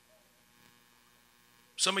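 Near silence with a faint steady electrical hum during a pause in a man's speech; his voice comes back in near the end.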